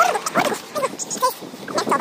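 A dog whimpering and yipping in several short, high calls, mixed with a person's voice.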